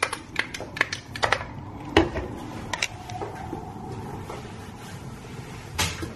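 The pump of a liquid-soap dispenser being pressed again and again, clicking quickly at first and then more slowly, with a last click near the end.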